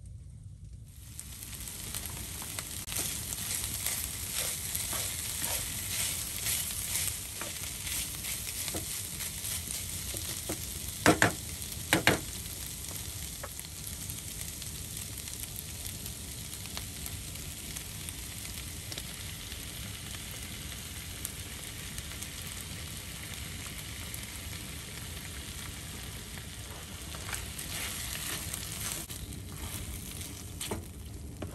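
Food sizzling and crackling in a frying pan on a wood-burning stove, starting about a second in. Two sharp knocks near the middle are the loudest sounds.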